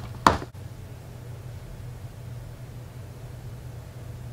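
Quiet room tone: a steady low hum under faint hiss, with one short knock-like sound just after the start.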